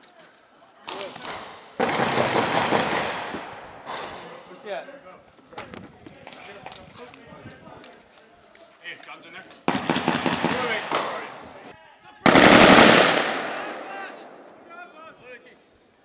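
Bursts of automatic gunfire from a close-quarters training assault: a long burst about two seconds in and a rapid string of reports around ten seconds. The loudest is a heavy single blast near the end that echoes off for a second or two.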